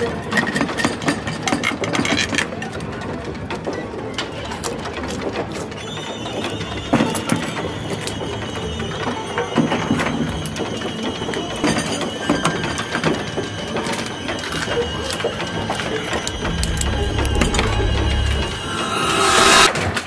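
Suspense soundtrack: a dense clicking, ratcheting texture with sustained high tones coming in about six seconds in. It builds to a loud swell near the end, then cuts off abruptly.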